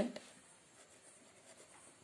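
Pen writing on paper: the faint scratch of the tip moving across the page as a word is written.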